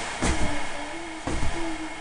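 Two dull thumps about a second apart: a child's bare foot stomping down on a rug-covered floor, imitating a dinosaur's thundering footsteps.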